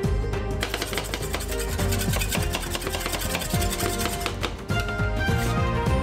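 Rapid, repeated tapping and scraping of two metal spatulas chopping and mixing cream and chocolate on the steel pan of a rolled-ice-cream freezer, over background music. The tapping is densest in the first four seconds or so, and the music comes forward near the end.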